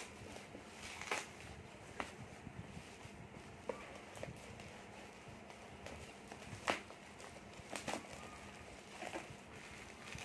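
Bubble wrap around a small box being cut with a utility knife and pulled apart by hand: scattered faint crinkles and light clicks, the sharpest about two-thirds of the way through.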